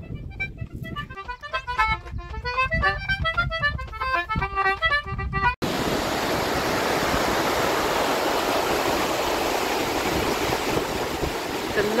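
Lively instrumental music of quick, tumbling melody notes that cuts off abruptly about halfway through, replaced by the steady rush of water pouring over a weir.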